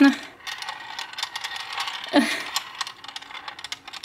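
Small metal balls rolling and clicking against the walls of a handheld plastic ball-in-maze puzzle as it is tilted: a run of light, irregular ticks and rattles.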